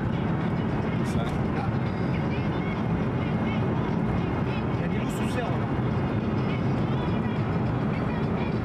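Steady engine and tyre noise heard inside the cabin of a car cruising along an open road.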